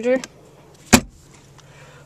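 A car's center console lid being shut: one sharp snap about a second in.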